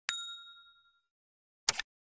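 Notification-bell ding sound effect: one bright ding right at the start that rings and fades over about a second, then a short sharp click near the end.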